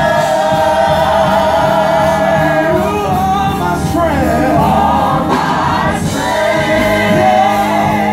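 Gospel praise team singing through microphones: a male lead with backing singers, holding long, wavering notes over a steady low accompaniment.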